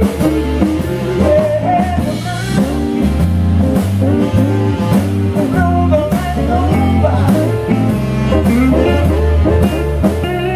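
Live blues band playing: electric guitars, electric bass and drum kit, with a singer's voice over them.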